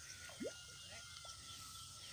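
Faint outdoor ambience: a low, even background hiss with a thin steady high tone, and one brief faint upward-gliding sound about half a second in.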